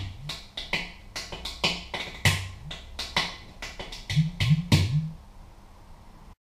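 Percussion music: a run of sharp drum hits, many with short low drum tones that bend in pitch, in an irregular rhythm. It thins out and fades about five seconds in.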